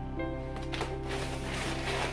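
Background music with steady held tones, and a few short rustles from an instruction sheet being handled.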